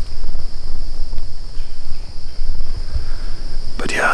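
Wind rumbling on the microphone, with a steady high-pitched insect chorus of crickets behind it.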